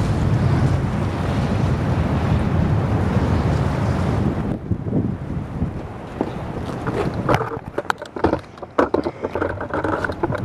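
Strong storm wind buffeting the microphone as a tornado approaches, loud and steady, easing suddenly about four and a half seconds in. After that come a run of sharp knocks and rattles over a lower rumble.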